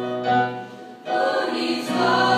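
Girls' choir singing held notes together; the sound falls away briefly about half a second in, between phrases, and the next phrase starts about a second in.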